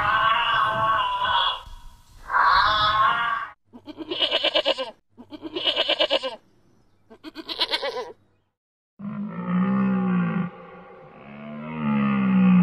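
A series of animal calls: two long, wavering calls at first, then three short, quavering sheep bleats a little over a second apart, then two long, low moaning calls near the end.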